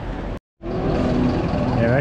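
Pedestrian street noise with voices breaks off abruptly. A large truck's diesel engine then runs steadily and loudly close by.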